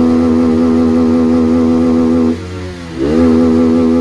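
Yamaha R15's single-cylinder engine held at a steady high rpm with the throttle locked open. About two and a half seconds in the revs briefly sag and the sound drops, then they climb straight back to the same held pitch.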